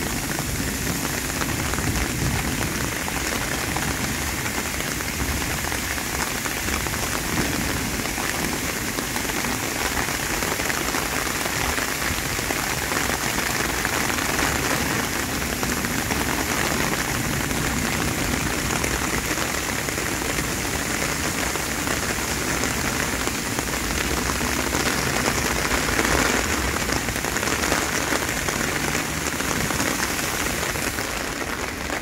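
Heavy downpour: rain falling in a steady, even hiss.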